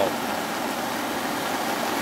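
A river in flood, its muddy water rushing fast and turbulent over its bed: a steady, even rush of water.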